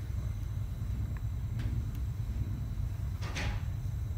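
Faint light ticks of a bent wrought-wire denture clasp being pressed and seated against a stone dental cast, with a brief soft rustle near the end, over a steady low hum.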